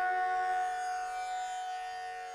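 A steady musical drone in a Carnatic devotional piece, a few sustained tones held without melody and slowly fading in a pause between sung phrases.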